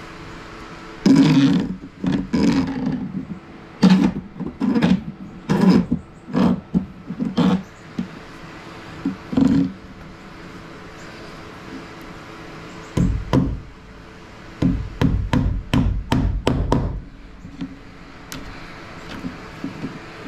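Hands-on electrical work overhead: metal-armoured MC cable and a metal box being handled, giving a run of sharp knocks and rattles, then a cluster of dull thumps over a faint steady hum.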